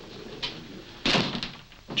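A door slams shut about a second in, a single sharp hit that dies away quickly. A faint click comes just before it.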